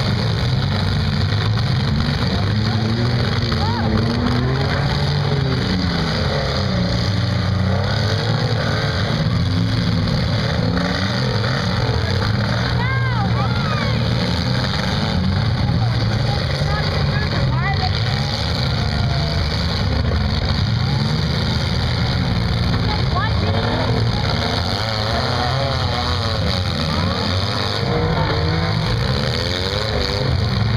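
Engines of several compact demolition-derby cars running and revving at once, a continuous din whose pitch rises and falls as the cars accelerate and push against each other.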